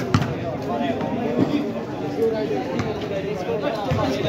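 Unclear chatter of players and onlookers, with a sharp thud of a basketball bouncing on concrete just after the start and a few more scattered thuds.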